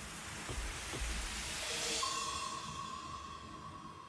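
Rain sound in the performance audio: a hiss that swells and then fades, with a single steady held tone coming in about halfway.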